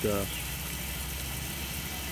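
A steady low hum with no clear events, after a brief spoken 'uh' at the start.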